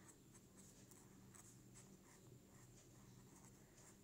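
Faint scratching of a felt-tip marker writing on lined notebook paper: a quick, irregular run of short strokes as the letters are drawn.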